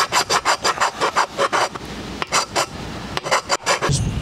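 Hand file stroking back and forth across a powder-coated aluminum column-wrap base piece, taking the paint off so the epoxy can bond. Quick strokes, about six a second, ease off just before halfway and come back in two short runs near the end.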